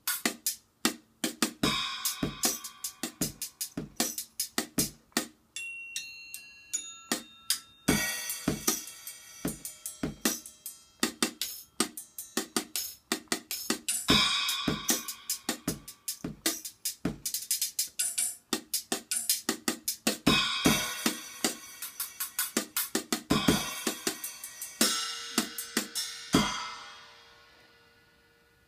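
Portable Red Dragon drum set played with sticks: a quick run of strokes on the small drums and cymbals, with cymbal crashes every few seconds and a short passage of ringing bell-like tones about six seconds in. It ends on a cymbal that rings out and fades.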